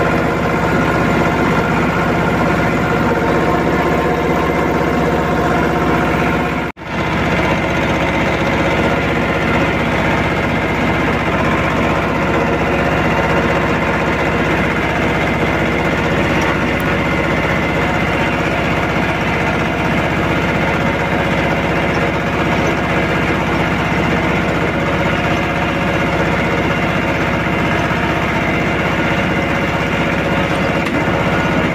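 Mahindra 24 hp mini tractor's diesel engine running steadily as the tractor drives, heard close up from the driver's seat. The sound drops out for a moment about seven seconds in.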